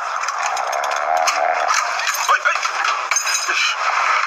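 TV drama soundtrack, thin with no bass, holding light clinks and rattles of objects being handled and a brief voice.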